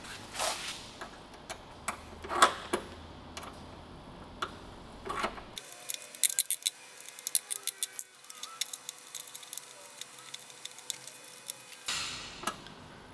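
Small metallic clicks and ticks of a 2.5 mm Allen key turning the bolt of a jack nut, a steel fork holding the nut against the door panel. A few separate clicks at first, then a long run of quick light ticks in the second half.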